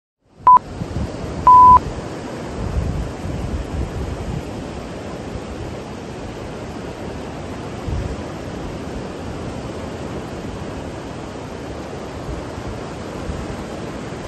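Workout interval timer beeps: a short beep, then a longer final beep about a second and a half in, marking the end of the countdown. Under and after them, steady outdoor wind gusting on the microphone and surf breaking on the shore.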